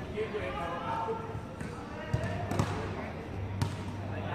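A basketball bouncing on a hard court: a few sharp thuds about two seconds in and another near the end. People's voices talk over the first second or so.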